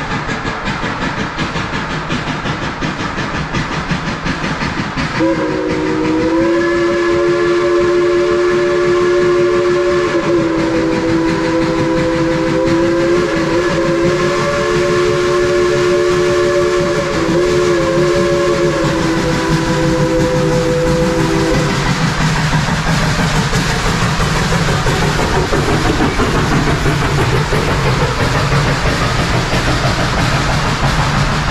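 A steam locomotive's chime whistle, several notes sounding together, blown in one long blast of about sixteen seconds that wavers briefly a few times. Then the locomotive and its coaches pass close by with a rolling rumble and the clatter of wheels on rail.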